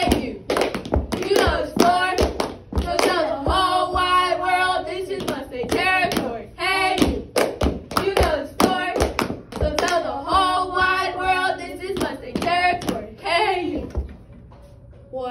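Girls chanting a cheer in a rhythmic sing-song, punctuated throughout by sharp hand claps and slaps kept in time with the chant.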